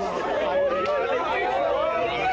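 A small crowd chattering, with several voices talking and exclaiming over one another at once.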